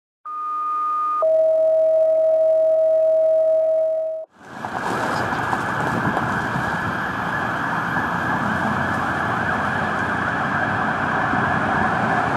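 A steady electronic tone that steps down to a lower pitch about a second in and holds for about three more seconds, then stops. After a brief gap comes a steady rushing noise.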